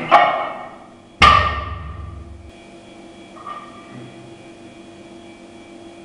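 Loaded barbell coming down after a snatch: a clank of the plates right at the start, then about a second in the bar hits the floor with a heavy thud and a metallic ring from the bar and plates. A lighter clink follows a couple of seconds later.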